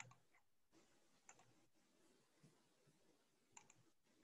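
Near silence with a few faint computer mouse clicks: one at the start, one about a second in and a quick pair near the end.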